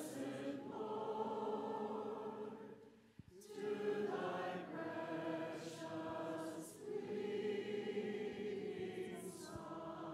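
A church congregation and choir singing a slow hymn together in long held phrases, with a brief breath break about three seconds in.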